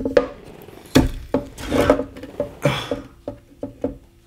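Handling noise: a series of light knocks, taps and clicks as a ukulele and its new nylon string are handled on a wooden tabletop. A faint steady hum comes in near the end.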